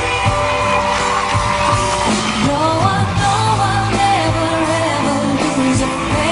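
A woman singing a wordless, sliding vocal run over a live band with a steady beat, the voice coming in about two seconds in.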